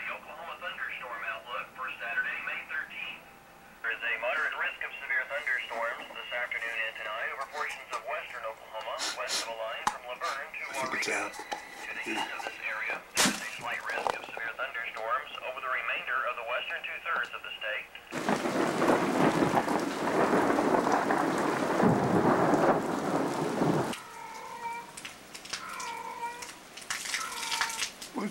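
A weather forecast voice, thin and muffled as if played through a small speaker, announcing thunderstorms. About two-thirds of the way in, this gives way to a loud rush of storm noise, heavy rain with thunder, lasting about six seconds.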